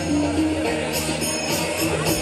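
Music with a steady beat: held melody notes over bright high percussion strokes about twice a second.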